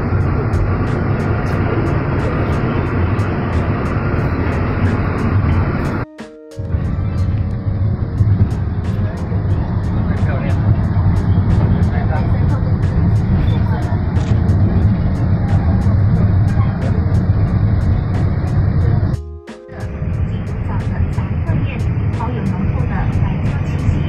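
Steady rumble of an Alishan Forest Railway carriage running along the track, heard from inside the coach, with a faint regular ticking over it. The sound drops out briefly twice.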